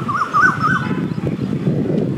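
A bird's quick run of about six whistled notes, each sliding up and down, in the first second, over a continuous low rumbling noise.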